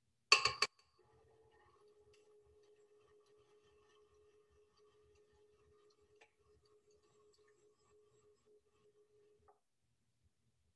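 A short, loud burst of noise just after the start, then a KitchenAid Artisan stand mixer running on low speed, beating choux dough with its paddle, as a faint steady hum that stops shortly before the end.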